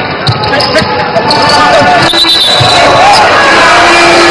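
Indoor basketball game sound: a ball bouncing on the hardwood court and sneakers squeaking, over voices and hall noise from the arena.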